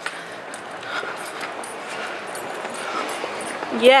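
Steady outdoor city-street ambience heard while walking, an even background wash with faint scattered sounds, ending in one short spoken word.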